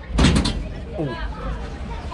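A short clattering bang, a few sharp knocks in quick succession about a quarter second in, from the Jungle Loop ride gondola jolting as it starts to move, over a steady low rumble.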